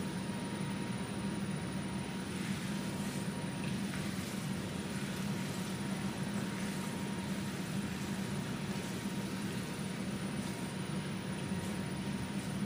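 A steady low hum with an even hiss throughout, and faint soft squishing of hands kneading raw ground-meat mixture in a bowl.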